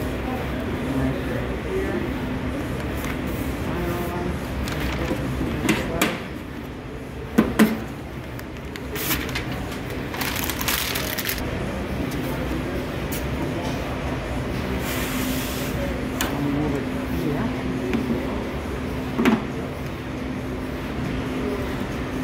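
Stiff binder's boards and paper being handled on a worktable over a steady hum, with a few sharp knocks as boards are set down, two close together about seven seconds in, and brief rustling swishes of paper.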